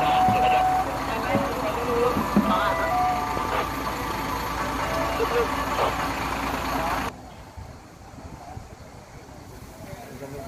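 Tour buses running at a busy bus park, a steady low rumble mixed with people's voices and a string of short held tones at several pitches. About seven seconds in, the sound drops sharply to a much quieter outdoor background.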